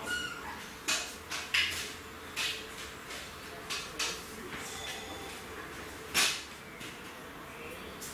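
Puffing on a tobacco pipe while lighting it with a match: a string of short, soft draws and pops at the lips, unevenly spaced, about eight in all.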